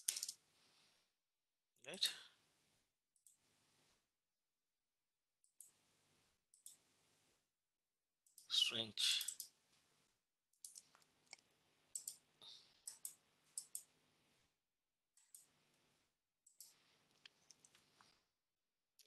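Faint, scattered clicks of a computer mouse and keyboard, coming in small clusters through the second half. There is a short spoken word about two seconds in and a louder brief vocal sound near the middle.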